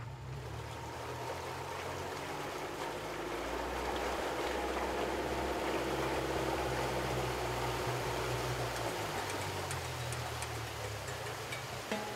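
A boat's motor running steadily with water rushing past the hull. It grows a little louder midway and eases off near the end.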